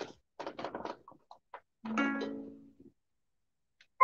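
Clicks and short rattles of plastic parts as a Brother sewing-and-embroidery machine is handled, then a single ringing tone about two seconds in that fades away over about a second.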